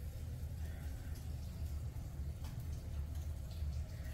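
Faint, steady low rumble with no distinct events.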